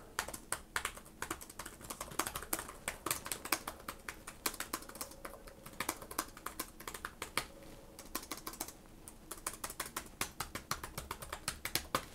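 Fast touch-typing on the Samsung Galaxy Book Pro 360 laptop keyboard, whose scissor-switch keys have one millimetre of travel: a quiet, continuous run of soft key clicks.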